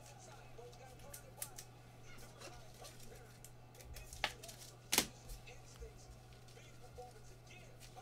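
Trading cards being handled with gloved hands on a card-break table: a few light taps and clicks, the sharpest two about four and five seconds in, over a steady low electrical hum.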